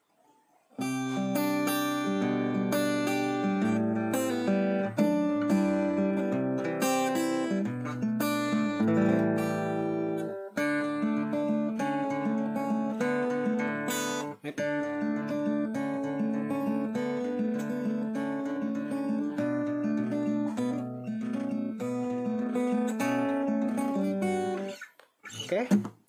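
Yamaha CPX500II steel-string acoustic guitar played unplugged, its strings fingerpicked in a run of ringing chords and single notes, with short breaks about ten and fourteen seconds in.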